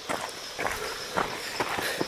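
A few footsteps crunching on a rocky, gritty trail.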